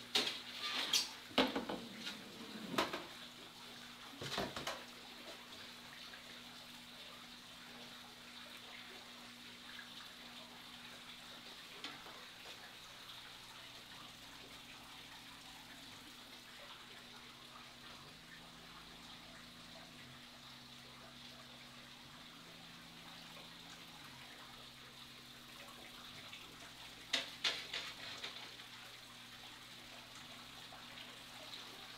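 Water splashing and sloshing as a long-handled fish net is swept through a large aquarium, in bursts during the first few seconds and again near the end as the net is lifted out dripping. Between them, a steady low hum of aquarium equipment.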